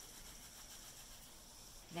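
Near silence: a faint, steady background hiss with no distinct sounds.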